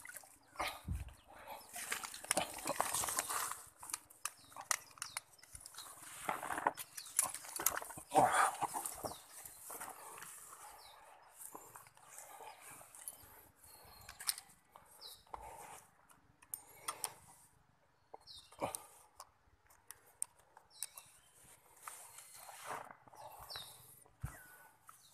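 Irregular rustling and knocks in grass, loudest in spells about two to four seconds and eight seconds in, then sparser: a freshly landed hampala being handled on the grassy bank with the fishing gear.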